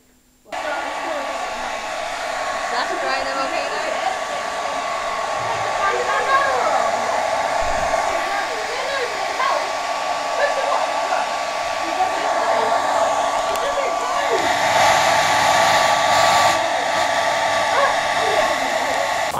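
Handheld hairdryer switched on about half a second in and running steadily with a thin whine, blowing on a wet papier-mâché model to dry it. It grows louder for a few seconds near the end.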